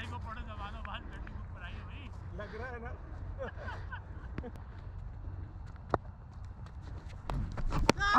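Players' voices calling in the distance, then one sharp crack of the cricket ball about six seconds in. Near the end come thumps and rustling as the keeper's camera is jolted.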